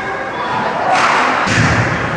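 Two sharp impacts from ice hockey play at the rink boards, about half a second apart, the second followed by a heavy thud, over the hum of the arena.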